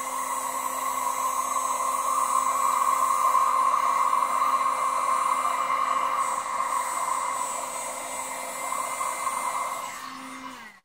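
Handheld electric heat gun running steadily, blowing hot air with an even hum, heating routed foam to smooth its rough surface.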